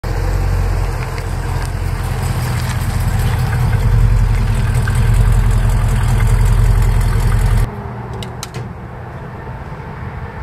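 Classic muscle car engine idling with a loud, steady low rumble, which cuts off abruptly near the end, leaving a few faint clicks.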